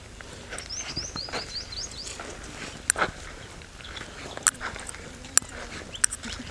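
A quick run of about eight short, high chirps from a small bird in the first two seconds, followed by a few sharp clicks, over faint outdoor background noise.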